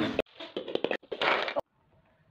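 Rustling and knocking from the phone being handled and moved up close, with a few sharp clicks; the sound cuts off abruptly twice, the second time about one and a half seconds in.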